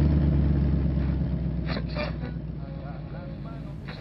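Car engine sound effect: it starts abruptly and loud, then runs steadily with a low hum, slowly growing quieter.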